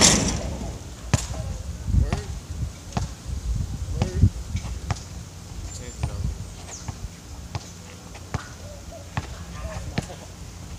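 A basketball bouncing on an outdoor hard court, short sharp knocks about once a second, after a loud hit with a brief ringing tail at the start as a shot strikes the hoop.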